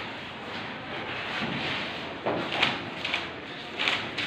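Marker pen squeaking and scratching on a whiteboard in a few short strokes, most of them in the second half, over a steady background hiss.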